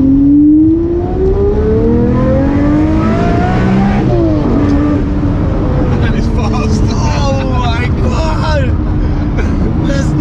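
Mid-engined supercar accelerating hard, heard from inside the cabin. The engine note rises steadily for about four seconds, drops sharply at a single-clutch gear shift, then climbs again. Laughter and shouts come over it in the second half.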